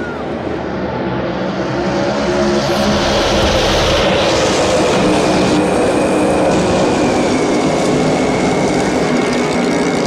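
A tightly packed field of NASCAR Cup Series V8 stock cars running flat out past the grandstand. It grows louder over the first few seconds as the pack approaches, then holds steady.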